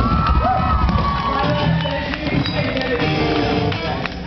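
Live rock band playing loudly, electric bass, guitar and drums amplified together, with a crowd cheering.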